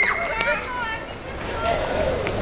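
Young children's voices calling out and chattering in the open, with a general outdoor hubbub underneath.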